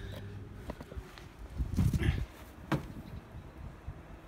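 Scattered handling knocks and thumps, with a short low rumble about two seconds in and a sharp click shortly after; no motor is running.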